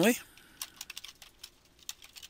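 Typing on a computer keyboard: a string of quick, irregularly spaced key clicks as a short caption is typed in.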